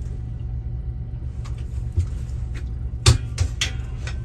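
A motorboat's engine running underway with a steady low rumble. A few short knocks stand out, the sharpest about three seconds in.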